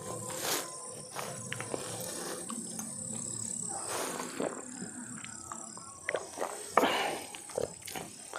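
Mouth noises of eating and drinking: chewing, swallowing and gulping water from steel tumblers, with scattered sharp clicks and a louder burst of noise about seven seconds in.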